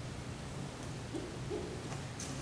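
Quiet room tone: a steady low hum, with two faint short sounds a little past the middle.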